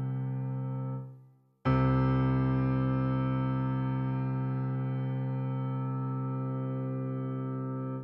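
Viscount Physis Piano's physically modelled acoustic grand piano sound playing a low note. The note is cut off about a second in, is struck again and held for about six seconds with a long, slow decay, and is then damped at the end. The long sustain comes from the String Length parameter being set to +10, which mainly sets how long the sound lasts.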